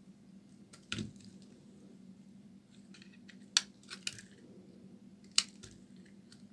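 A bar of dry soap being cut with a snap-off utility knife blade and broken apart, giving a few sharp cracks and crunches, the loudest about halfway through and again near the end.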